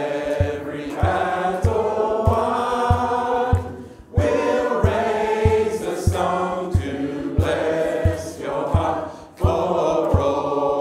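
A group of voices singing a worship song's refrain a cappella, the phrases breaking briefly for breath twice. A steady low thump, about three a second, keeps the beat under the voices.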